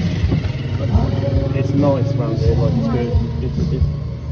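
A vehicle engine running steadily while riding along, with people talking over it.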